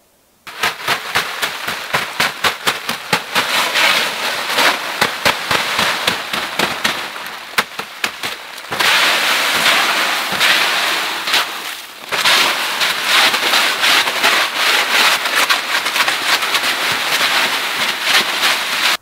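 A stick scraping and swatting snow off a tarp roof: a dense, loud run of crackling scrapes and sharp taps, starting abruptly and dipping briefly about two-thirds of the way through.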